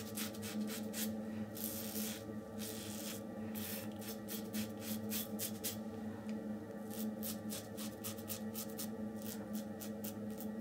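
Yates Titanium 921-M double-edge safety razor scraping through lathered stubble in quick short strokes, several a second, pausing briefly now and then, over a steady low hum in the room.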